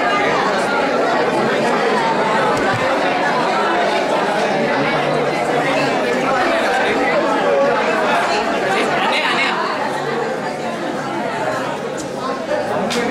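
Many people talking at once in a large hall: a steady, overlapping chatter of voices with no single speaker standing out.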